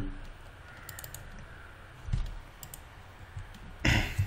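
A few faint, scattered computer mouse and keyboard clicks, with a soft low thump about two seconds in and a louder knock just before the end.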